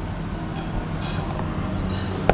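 Low engine hum of a nearby vehicle, slowly growing louder.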